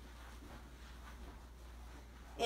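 Quiet room tone with a steady low hum and no distinct sound.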